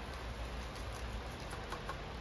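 Faint rustling and light ticks of chunky aroid potting mix (bark and perlite) being handled into a small pot, over a steady low hum.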